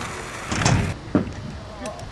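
Kick scooter wheels rolling over skatepark asphalt, with one sharp clack just over a second in.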